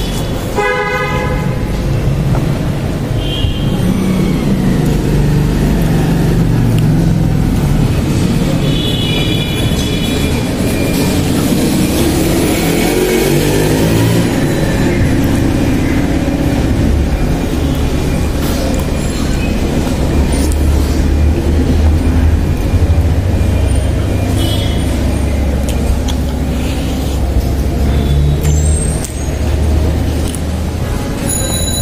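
Road traffic: a steady low engine rumble with short horn toots near the start and again a few seconds and about ten seconds in, a vehicle passing around the middle, then a steady low engine drone.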